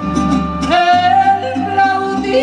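Live mariachi band playing a huapango, with pulsing guitarrón bass and strummed chords; about two-thirds of a second in, a female voice slides up into a long, high held note with vibrato.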